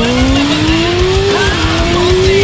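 Motorcycle engine accelerating hard, its pitch climbing steadily, dropping with an upshift about one and a half seconds in, then climbing again in the next gear.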